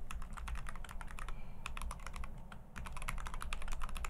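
Typing on a computer keyboard: quick runs of key clicks with two short pauses.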